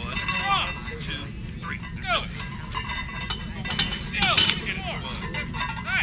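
Metal clinks of barbells and weight plates, a few sharp ones a little past the middle, over background voices.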